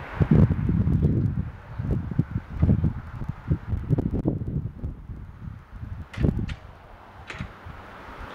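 Gusty wind buffeting the microphone in irregular low rumbles, strongest in the first second and again around the middle. Two brief sharp knocks come near the end.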